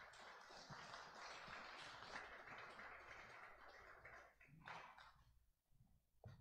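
Near silence with a faint, even rustle of a congregation moving about and settling, fading out about four seconds in.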